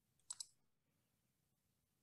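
Two quick, sharp clicks close together about a third of a second in, otherwise near silence.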